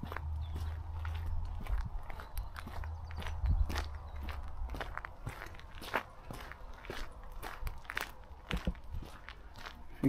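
Footsteps of a person walking over gravelly, broken tarmac and into grass and dry undergrowth: irregular crunching steps. A low rumble runs under the first four seconds.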